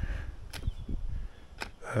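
Two sharp clicks about a second apart from the Gardena 380AC cordless mower's controls, with no motor running: the mower fails to start on its rewired 18 V battery supply.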